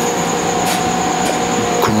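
Steady mechanical whir of a running machine, with a constant hum of two steady tones and a faint high whine over it.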